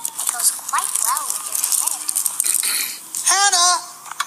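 A child's voice making short wordless vocal sounds, with a stronger high-pitched call near the end. In between comes a run of quick clicking and rattling from the plastic action figure being handled.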